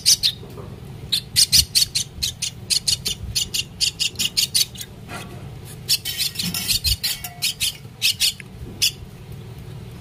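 Common myna nestling giving harsh, rapid begging calls, several a second in runs with short breaks, while it gapes for food.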